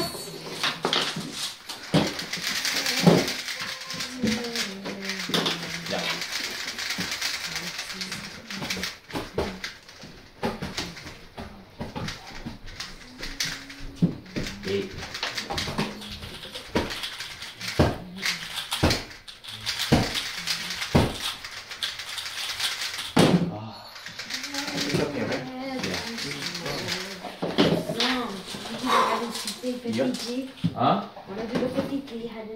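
Plastic 3x3 speed cubes being turned fast, a dense rapid clicking rattle, with sharp knocks as cubes are handled and set down on the timer mats. Low talk murmurs underneath.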